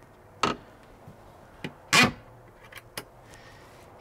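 Plywood upper cabinet door of a teardrop trailer being shut against its magnet catches and its push-button locking knob pressed in: a few sharp clicks and knocks, the loudest about two seconds in.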